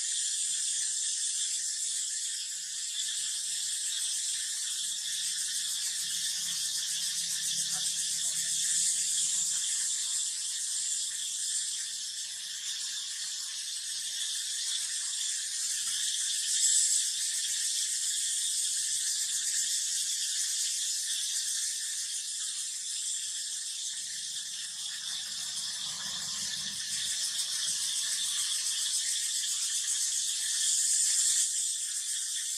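A steady, high-pitched buzzing chorus of insects in forest, with a faint low hum that comes and goes.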